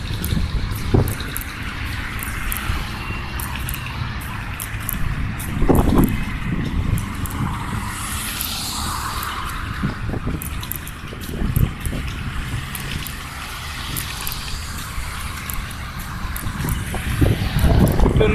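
Road traffic passing on a wide city road: a steady traffic noise, with one vehicle swelling louder about halfway through.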